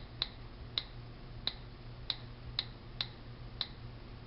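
iPhone on-screen keyboard key-click sounds from the phone's speaker as letters are tapped in, about seven short, sharp ticks at an uneven typing pace.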